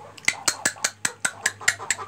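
A quick, fairly even series of about ten sharp clicks, some five a second.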